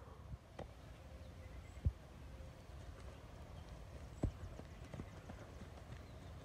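A few scattered dull thuds, the loudest about two seconds in: a medicine ball hitting the grass after a throw, and feet landing on the lawn.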